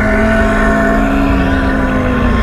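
Deep, rasping werewolf growl sound effect, held steadily and sinking slightly in pitch near the end.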